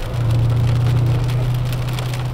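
Dodge Challenger R/T's 5.7-litre V8 pulling under throttle from inside the cabin, its low steady drone swelling up just after the start and easing off toward the end, over rain hissing and pattering on the car.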